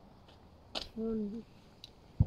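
A sharp click, then a brief wordless vocal sound from a person, a single short syllable about a second in, with a faint tick near the end.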